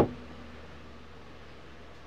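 Quiet indoor room tone: a steady low hum and faint hiss, opening with one brief sharp click.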